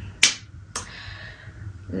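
A sharp snap about a quarter second in, then a second, fainter click about half a second later.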